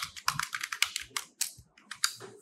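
Typing on a computer keyboard: a rapid run of keystrokes, about eight a second, that stops shortly before the end.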